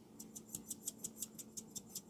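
Cut-glass salt shaker shaken in quick, even strokes, about six a second. Each stroke is a short, light rattle of salt grains.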